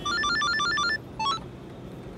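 Mobile phone ringtone: a fast run of short electronic beeping notes for about a second, then a few more rising notes.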